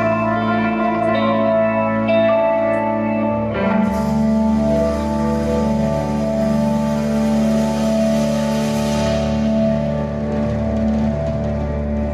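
Live rock band with organ playing the closing bars of an instrumental: sustained chords that move, about three and a half seconds in, to a long final held chord.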